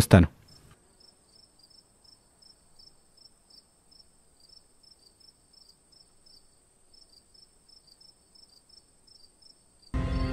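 Faint cricket chirping: a thin steady high tone with short chirps about three times a second.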